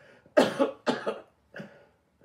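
A man coughing into a cloth held over his mouth: three sharp coughs in quick succession, the last one weaker.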